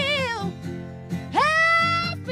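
Female soul singer's wordless vocal ad-lib over acoustic guitar chords: a held, wavering note tails off in the first half second, then a new note swoops upward about a second and a half in and is held.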